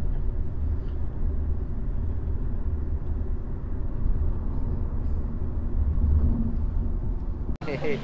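Steady low rumble of road noise inside a moving taxi's cabin, heard from the back seat. It cuts off abruptly near the end.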